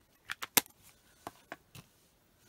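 A string of short, sharp taps and clicks, about seven at uneven spacing with the loudest about half a second in, from a clear acrylic stamp block being handled and knocked against the desk and paper while stamping.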